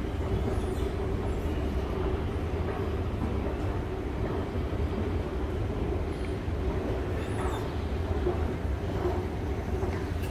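Escalator running: a steady low rumble with an even mechanical hum, mixed with the general hum of the indoor shopping area.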